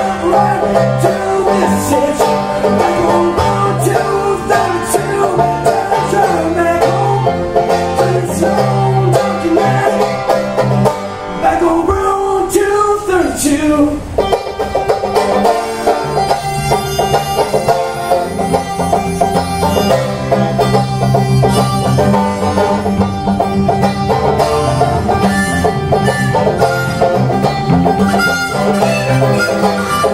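Banjo strummed in a steady driving rhythm over acoustic guitar backing: an instrumental break in a country-folk song.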